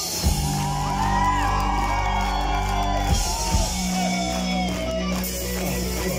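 Live rock band playing: electric guitars over bass and drums.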